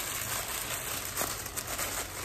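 Tissue paper crinkling continuously as it is scrunched and shaped by hand, with one light tick a little past the middle.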